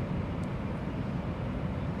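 Steady background noise, a low rumble with a fainter hiss, in a pause between spoken phrases.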